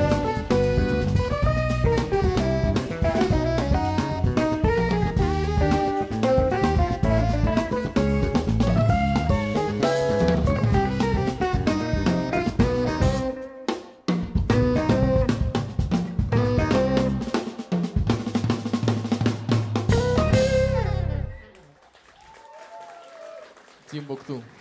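Live jazz quartet of tenor saxophone, electric guitar, bass guitar and drum kit playing the closing bars of a tune. The band breaks off briefly about 13 seconds in, plays on, and ends together about 21 seconds in.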